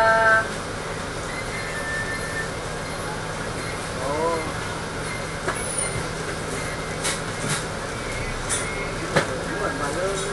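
Inside the cabin of a Dennis Trident double-decker bus in slow traffic: the engine runs with a steady low hum under a constant rumble. A few sharp clicks and rattles come between about seven and nine seconds in.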